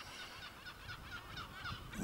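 Faint bird calls: many short, wavering calls over low outdoor background noise.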